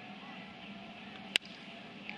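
A single sharp crack of a wooden baseball bat squarely meeting a pitched fastball about halfway through, a hard-hit line drive, over a low steady stadium murmur.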